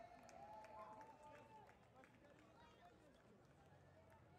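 Faint footsteps of many runners on stone paving, with voices from the crowd.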